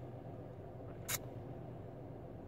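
Quiet pause: a low steady background hum in a small enclosed space such as a car cabin, with one brief hiss about a second in.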